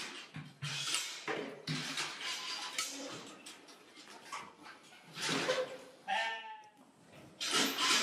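Sheep crowding in a metal-panel handling chute, their hooves and bodies knocking and rattling the gates in irregular bangs, loudest about five seconds in. One sheep bleats once about six seconds in.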